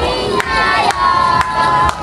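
A group of children shouting together in unison, one long held note in the second half, over sharp claps about twice a second.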